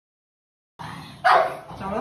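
Silence, then a dog barks once, sharply, a little over a second in; a person's voice starts near the end.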